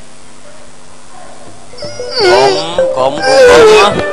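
A performer's voice in two loud, drawn-out cries with a wavering, sliding pitch, starting about halfway through, over a low steady background.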